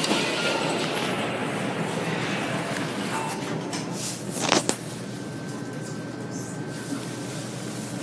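Inside a hydraulic elevator car: a steady rushing background, then a sharp double knock a little past halfway, after which the sound settles quieter and steadier with a faint high tone.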